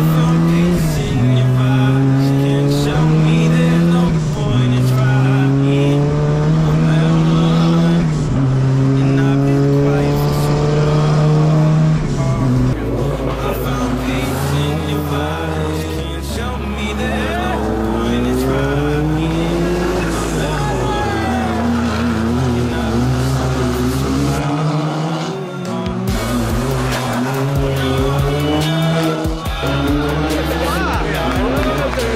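Rally car engine pulling hard through the gears, its pitch climbing and dropping back at each upshift, over a music track. After about twelve seconds the music's heavy bass takes over, with a rally engine revving up and down beneath it.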